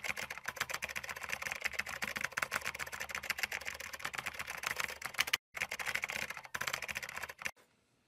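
Fast, continuous typing on a laptop's chiclet keyboard: a dense run of key clicks, broken by two brief gaps after about five seconds and stopping about seven and a half seconds in.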